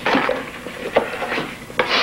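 Paper being handled and rustled, with a couple of sharp crackles, one about a second in and one near the end.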